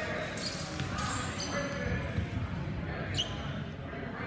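Longsword fencers' footwork thudding on a hardwood gym floor, with the echoing chatter of a crowd in a large hall and a single short, high shoe squeak a little past three seconds in.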